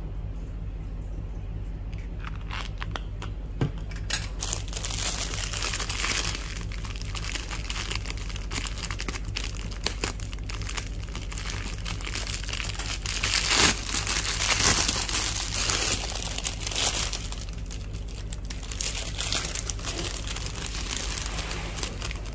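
Thin clear plastic bread bag crinkling as hands handle it, starting about four seconds in and loudest a little past the middle. A steady low hum runs underneath.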